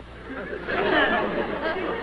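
Audience laughter, many voices laughing at once, swelling up about half a second in and holding loud.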